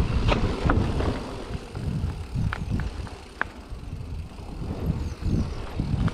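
Mountain bike rolling down a dirt forest trail: low tyre rumble and wind on the microphone, heavier at the start and again near the end, with a few sharp clicks and rattles from the bike.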